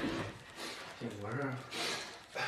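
Dumpling dough being kneaded and pressed by hand on a wooden board, a soft knock at the start, then rubbing. A short spoken phrase comes about a second in.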